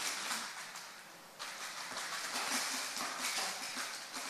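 A plastic bag rustling and crinkling as it is handled and rummaged through, in two spells with a short pause about a second in.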